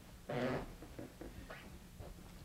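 A single short vocal sound from a person, about half a second long, a quarter second in, followed by a few faint clicks in a quiet room.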